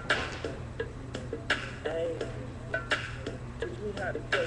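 Ping pong balls bouncing off hard surfaces, giving an irregular run of sharp, light clicks, several close together.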